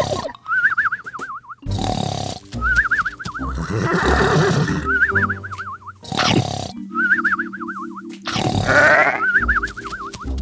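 Cartoon snoring sound effect repeated about five times. Each snore is a rough snort followed by a warbling whistle, about every two seconds, with background music underneath.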